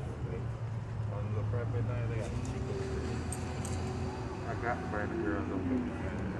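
Road traffic with a steady low engine rumble, a vehicle's pitch falling as it passes near the end, and other people's voices talking in the background.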